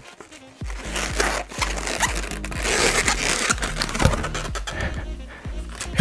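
Latex twisting balloons rubbing and scraping against each other and the hands in a run of short scratchy sounds as the figure is twisted and turned, over background music.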